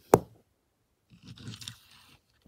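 A sharp click, then about a second of soft scraping and rustling as fingers pick up and turn a small metal diecast model car on the tabletop.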